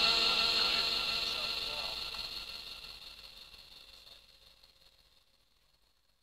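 The tail of a Quran recitation, a reciter's voice holding its last note, fading out steadily and gone about five seconds in.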